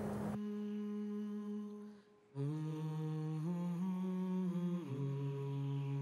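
A slow hummed melody of long held notes that step between pitches, breaking off briefly about two seconds in. It is soundtrack music laid under the film.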